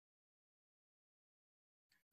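Silence: the audio is cut out entirely while the call's microphone is muted.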